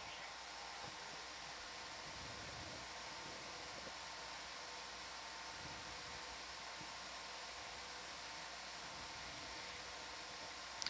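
Steady, even hiss with faint steady humming tones under it, and no distinct event: the background noise of an open audio feed between calls.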